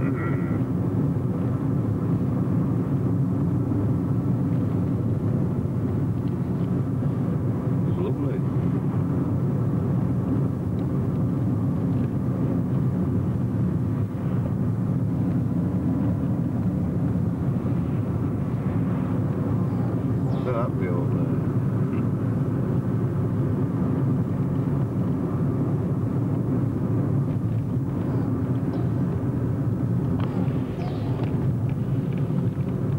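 Engine and tyre noise of a car driving on a wet road, heard from inside the cabin: a steady, even drone.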